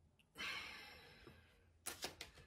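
A person sighs: a breathy exhale that starts about a third of a second in and fades away over about a second. A few light clicks follow near the end.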